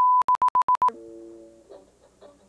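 A steady, loud, high test tone that breaks into a quick run of about six short beeps. About a second in, the music starts with a held chord and then picked notes.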